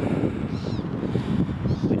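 Wind rumbling on the microphone outdoors, with a faint bird call about two-thirds of a second in.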